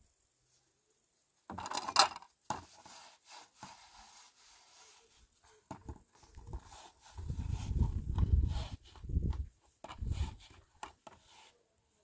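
Dishes being washed by hand in a plastic basin: plates, cups and a plastic colander clatter, knock and rub together, loudest in a sharp clatter about two seconds in. A low rumble runs for a couple of seconds past the middle.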